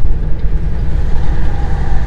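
Steady low drone of a semi-truck's diesel engine and road noise heard inside the cab, the truck hauling a heavy load at about 79,000 lb gross.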